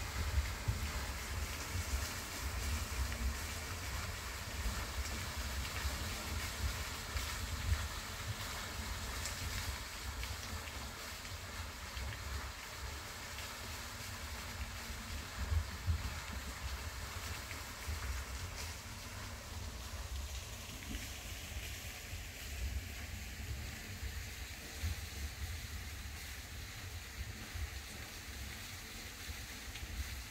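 Wind buffeting the microphone: an uneven low rumble that rises and falls in gusts throughout, over a faint outdoor hiss.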